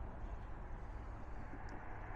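Steady, low outdoor background rumble with no distinct events.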